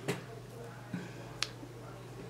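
Three small sharp clicks as glass seed beads and a beading needle are handled, over a steady low hum.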